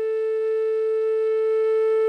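Background flute music holding one long, steady note.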